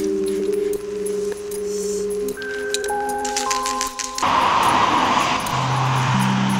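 Slow background music with held notes, over the clinking of metal spray paint cans being handled in a bag. About four seconds in, a steady spray-can hiss starts as paint goes onto the wall.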